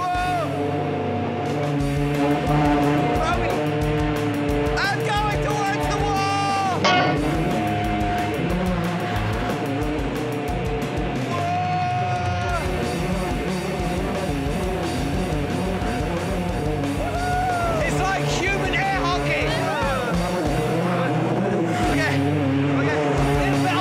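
Background music with guitar, steady throughout, with voices calling out over it now and then.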